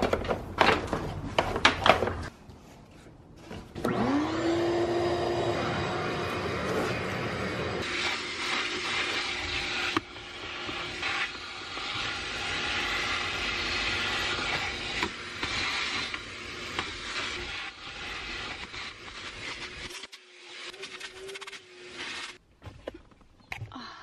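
A Ridgid wet/dry shop vacuum: a few knocks as it is handled, then about four seconds in the motor starts with a rising whine and settles into a steady run. It sucks up crumbs through a long hose and crevice wand, the rush of air changing as the nozzle moves, and drops away near the end.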